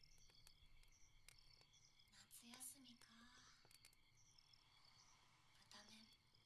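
Near silence, with faint scattered clicks and a soft, barely audible breathy murmur a couple of seconds in.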